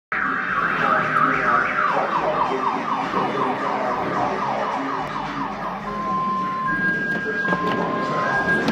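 Car tyres squealing on the smooth floor of an underground parking garage as the car is driven hard through the turns. The squeal wavers in quick falling sweeps, about four a second, from about two seconds in.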